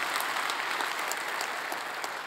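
Congregation applauding, a steady wash of clapping that eases slightly toward the end.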